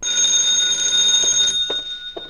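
Electric bell ringing: a loud, steady ring that stops after about a second and a half, leaving the bell ringing on faintly as it dies away.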